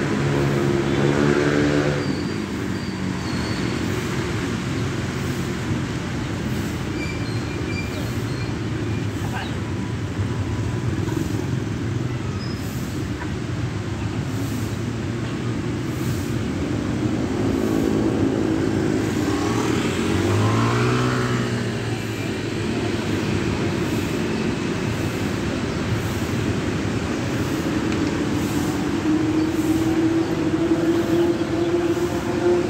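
Motor traffic: motorcycle and car engines running steadily as a continuous rumble. About two-thirds of the way through, one engine rises in pitch as a vehicle pulls away.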